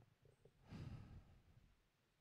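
Near silence, broken by one soft breath from a man, a little over half a second in and lasting about half a second.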